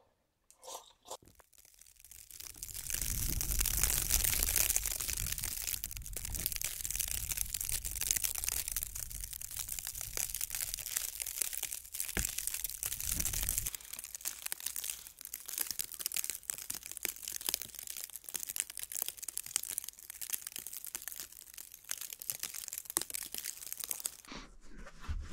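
Snowstorm ambience: a steady hiss of wind-driven snow, dense with small crackling ticks of snow striking, starting about two seconds in. A low wind rumble underneath drops away a little past halfway.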